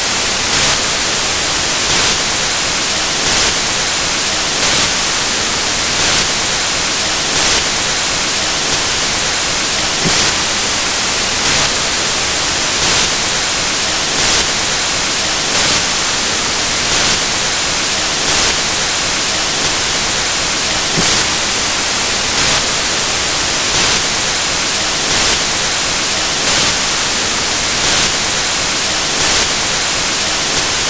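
Loud, steady static hiss with a brief swell about every second and a half; no speech comes through.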